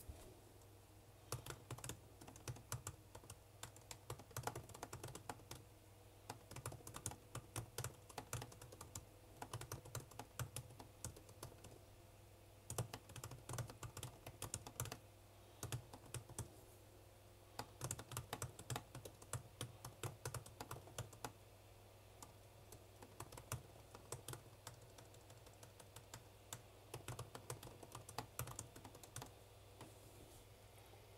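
Typing on a computer keyboard: bursts of quick key clicks broken by short pauses, over a faint steady hum.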